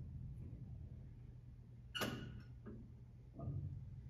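An Otis AC geared traction elevator car arriving at the landing: a low steady hum, then a sharp metallic clunk about two seconds in as the car stops, followed by a couple of lighter clicks and a dull thump.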